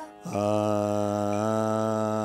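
Carnatic akaram singing by a teacher and students together: long held 'aa' vowel notes, lower and higher voices moving in step. The voices come in after a brief break and step up to the next note of the scale about halfway through.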